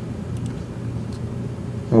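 A steady low background hum, the room tone of the broadcast sound track, in a pause between spoken words.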